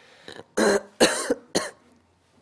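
A man coughing three times in short bursts about half a second apart, clearing a throat whose voice has given out.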